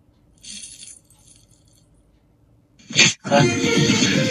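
Movie trailer soundtrack: a brief high metallic jingle about half a second in, then a quiet stretch, then a sharp hit about three seconds in that leads straight into loud title music.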